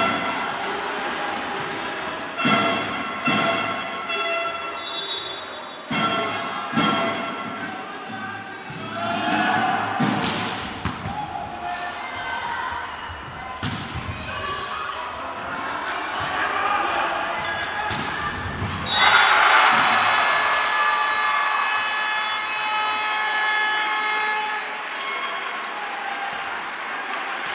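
Volleyball rally in an echoing sports hall: the ball is struck several times with sharp slaps while players and spectators shout. About nineteen seconds in, the crowd bursts into loud cheering and shouting that carries on to the end.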